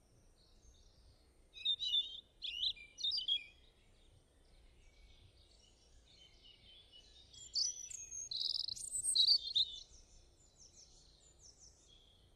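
Birds chirping: a quick run of high chirps about one and a half seconds in, then a longer, busier stretch of song from about seven and a half seconds, trailing off in a series of short repeated notes near the end.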